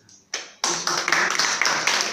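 Audience applauding, starting suddenly about half a second in: a dense, loud patter of many hands clapping.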